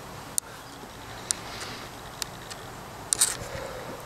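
Handling noise from a hand-held camera: a few sharp clicks about a second apart and a short rustle about three seconds in, over faint room noise.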